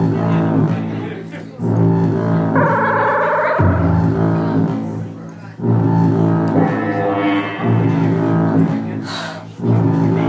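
Live music with a deep bass note struck about every two seconds and left to fade. A singing voice holds a wavering, vibrato note about three seconds in, with a fainter phrase near seven seconds.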